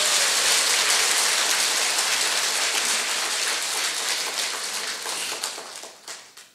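A large congregation applauding steadily, the applause dying away near the end.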